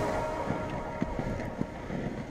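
Wind buffeting a skater's camera microphone over the low rumble of inline-skate wheels rolling on asphalt, with a few faint ticks.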